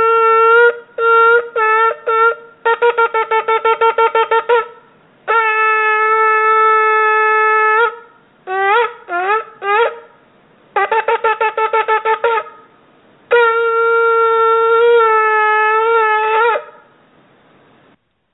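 A shofar blown as a victory sound: long held blasts alternate with groups of short notes and quick staccato runs, some notes swooping in pitch. The last long blast lasts about three seconds and wavers just before it stops.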